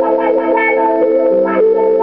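Telecaster-style electric guitar played with a clean-ish tone through a wah pedal: held, ringing chords, with a fresh strum about a second and a half in.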